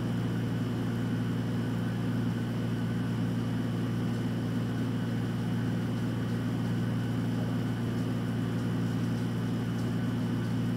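A steady low machine hum with a thin high whine above it, unchanging throughout; no distinct event stands out above it.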